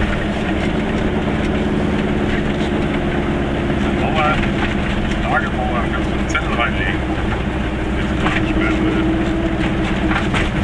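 Goggomobil's small two-stroke twin-cylinder engine running steadily as the car drives along, heard from inside the cabin. A few brief bits of voice come in around the middle.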